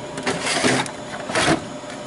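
Metal tool chest drawer sliding along its runners with a rattle of tools, then a single clunk about one and a half seconds in.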